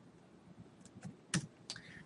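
Laptop keyboard being typed on: a few separate key taps finishing an R console command, the loudest about a second and a half in.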